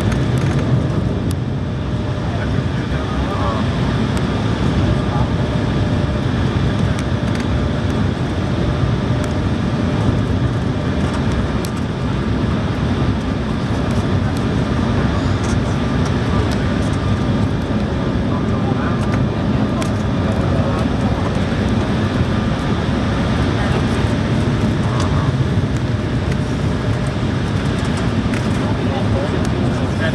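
Steady cabin noise inside an Embraer 170 airliner on final approach: the rush of its twin CF34 turbofan engines and the airflow over the lowered flaps, holding an even level, with a faint steady hum over it.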